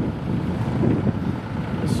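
Wind buffeting the microphone outdoors: an uneven low rumble with no clear tone.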